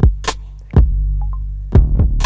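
Electronic dance music: a deep, sustained bass note under punchy drum-machine hits. The level dips briefly before a loud hit comes back in just under a second in.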